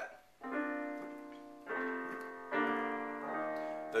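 Casio digital piano playing three sustained chords in B flat, one after another, each held and fading until the next is struck.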